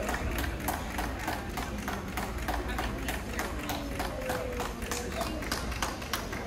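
Quick, regular footsteps tapping on a hard indoor floor as a handler trots a small dog around a show ring, with indistinct voices in the hall behind.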